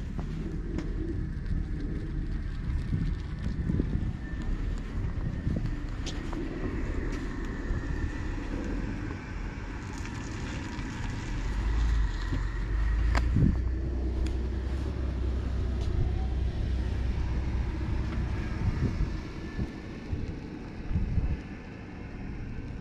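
Wind buffeting the camera microphone, a low rumble that rises and falls and swells louder about halfway through, with one sharp knock a little after that.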